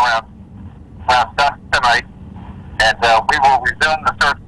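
A man speaking over a telephone line, the voice thin and narrow, in two stretches with a pause between.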